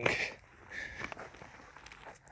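Faint footsteps and rustling on grass, with a few light knocks.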